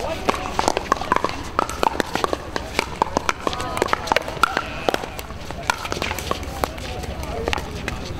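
Irregular, overlapping sharp pops of pickleball paddles hitting plastic balls on many surrounding courts, over a constant murmur of indistinct voices.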